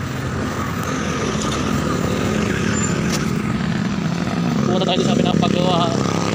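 Steady motor-vehicle noise along a road, a continuous low engine rumble, with a wavering voice briefly near the end.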